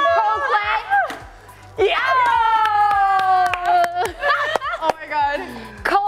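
Excited voices calling out, one of them drawing out a sung note for about two seconds as it slowly falls in pitch, with sharp claps or taps scattered through.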